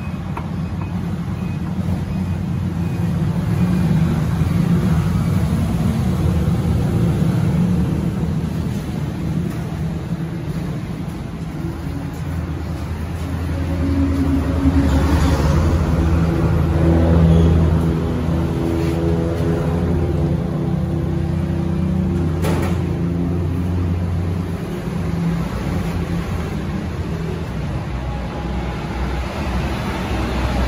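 Steady low motor-vehicle engine rumble, rising a little and carrying several steady pitched tones from about a third of the way in to near the end.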